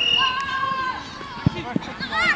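A high voice shouting, held for about a second, then two short thuds near the end as the football is kicked.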